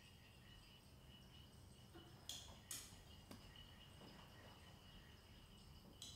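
Near silence: room tone with three faint, sharp clinks a little past two and three seconds in, typical of laboratory glassware being handled.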